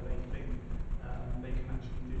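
A man talking into a handheld microphone; the speech is a continuous voice, unclear in words, over a low rumble.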